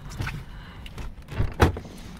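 Pickup truck running at low speed, heard from inside the cab, with a series of clicks and knocks; the loudest knock comes about one and a half seconds in.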